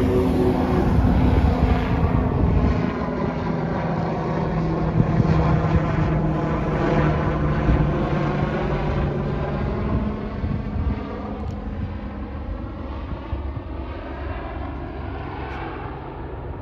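Helicopter flying overhead, its rotor and engine sound sweeping with a phasing whoosh as it passes, then fading steadily over the last few seconds as it flies away.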